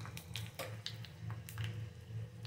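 Faint scattered pops and crackles from hot oil tempering peanuts and chillies in a small steel pan, over a steady low hum.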